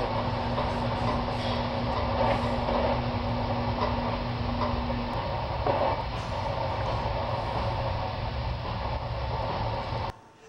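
Steady rumble and hiss of an active underground steam tunnel, played back over a hall's loudspeakers. A steady hum runs under it and cuts off about halfway through.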